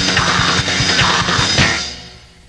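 Live punk band playing loud and fast, with distorted guitar over a rapid drum beat; the song stops near the end and the sound falls away.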